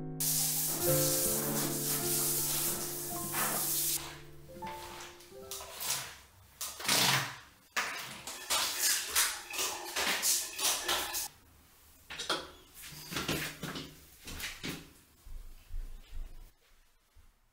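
Handheld shower head spraying water onto tile, a steady hiss that stops about four seconds in. Then a squeegee is pulled across the wet floor tiles in a run of short, uneven swipes.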